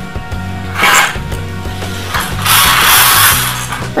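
Zebra roller blind being operated: a short mechanical rattle about a second in, then a longer, louder one near the end as the blind moves, over steady background music.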